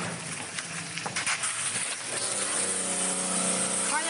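High-pressure car washer running: a steady hiss of water spraying from the gun over a machine hum that steadies about two seconds in.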